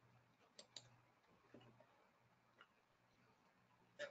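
Near silence over a faint low hum, broken by a few faint, short clicks: two close together just under a second in, one more at about a second and a half, another at about two and a half seconds, and a sharper one at the very end.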